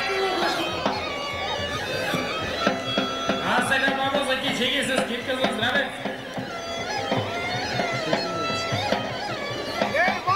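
Bulgarian folk dance music: a large tapan drum beaten with a stick under a droning bagpipe melody, with crowd voices mixed in.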